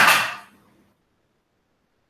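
A short, loud burst of breath noise from a man close to the microphone, fading out within about half a second, followed by near silence.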